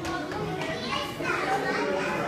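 Overlapping talk of several people, children's voices among them, a steady chatter of onlookers.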